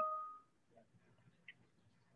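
A brief clear tone fading out within the first half second, followed by near silence with one faint tick about one and a half seconds in.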